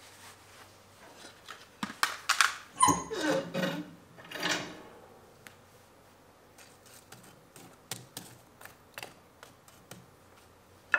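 Wood stove door latch worked and the steel door swung open: a run of sharp metal clanks and rattles with a short falling squeak about three seconds in. Then scattered light clicks and scrapes as the hot coals in the firebox are stirred.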